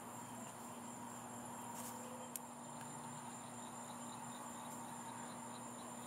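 A faint, steady chorus of crickets trilling on a high, even note, over a low steady hum. There is a single small click about two seconds in.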